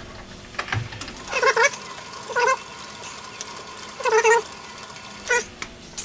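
Homemade straddle knurling tool's spring-loaded wheels rolling a knurl into mild steel on a lathe under freshly increased pressure, giving three short squeals and a few clicks over a faint steady mechanical sound.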